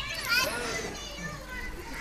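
Faint, high-pitched voices of children chattering in the background, heard in a pause of the main speaker's talk.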